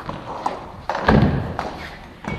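A few light knocks, then a heavier thud a little after one second in, the loudest sound.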